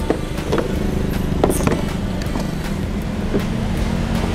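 A vehicle engine running steadily close by, a low rumble with a held hum. Three light knocks of plastic trays being handled come in the first second and a half.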